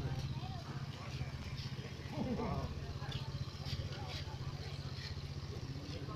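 A motorcycle engine running steadily close by, with even rapid low pulses, and people's voices breaking in briefly about two seconds in.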